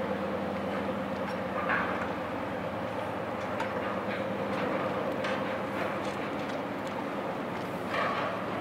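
Steady drone of a passing tug-barge's diesel machinery, a low hum with a few held tones, with a few faint short sounds on top.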